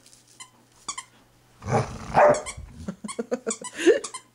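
A bearded collie gives a short, rough growl about two seconds in while chewing on a squeaky toy, with small squeaks and clicks from the toy throughout and a brief rising squeak near the end.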